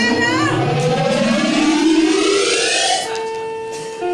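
A rising, siren-like sound effect over the hall's loudspeakers, climbing in pitch for about three seconds, then giving way to steady held tones near the end.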